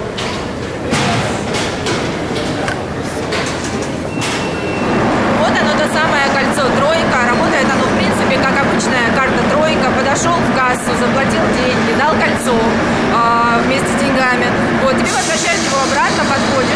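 Mostly speech echoing in a metro station hall over steady station background noise, with a short high electronic beep about four seconds in.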